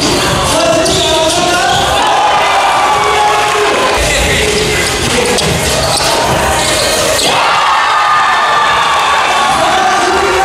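A basketball dribbling on an indoor hardwood court under loud music, with crowd noise.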